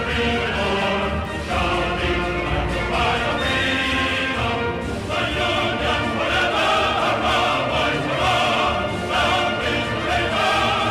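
Choral music: a choir singing over orchestral accompaniment, in steady, unbroken phrases.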